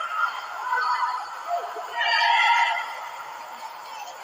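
High-pitched shouts of players calling to each other on the pitch: a faint call near the start and a louder one about two seconds in, with no crowd noise around them.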